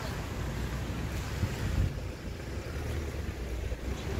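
Wind buffeting the camera's microphone, a gusty rumble over faint outdoor street background.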